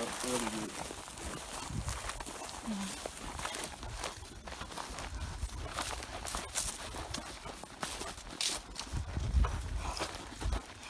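Footsteps crunching through dry sagebrush and grass, with the brush scraping and rustling against jeans and boots in an irregular crackle.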